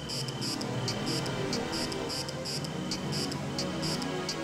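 Electroacoustic music played live from laptops and a mixing desk: high, evenly repeating chirps, several a second, over a dense low pulsing texture.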